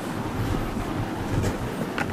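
Steady background hiss with an uneven low rumble underneath.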